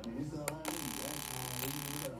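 Two sharp clicks close together about half a second in, fitting a Bosch EV1 fuel injector being fired twice by a test pulser, with a faint voice talking underneath.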